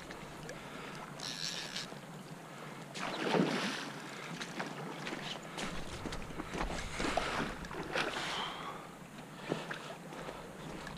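Water splashing and sloshing in irregular bursts as a hooked salmon or steelhead thrashes near the surface of shallow creek water, the loudest splash about three seconds in.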